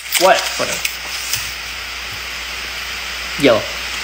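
A steady, even hiss with no clear rhythm or pitch, broken only by a short exclaimed word at the start and another near the end.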